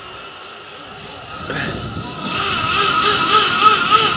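Zip line trolley's pulleys running along the steel cable: a steady whine that grows louder about two seconds in as the rider picks up speed, over a rushing rumble.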